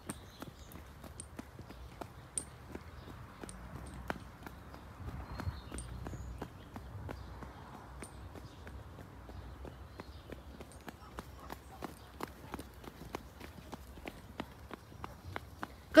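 Footsteps on an asphalt path while walking, heard as many small irregular clicks over a low rumble.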